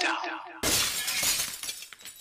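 A sudden loud shattering crash about half a second in, fading away over the next second and a half.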